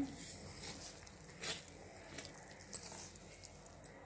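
Steel spoon stirring wheat flour and water into a paste in a steel bowl: faint wet squishing, with a couple of short soft knocks of the spoon, about a second and a half in and near three seconds.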